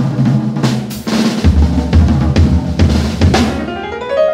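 Jazz drum kit played with sticks: snare, bass drum and cymbal hits in a busy pattern, with heavier low-end hits from about a second and a half in. A piano run comes in right at the end.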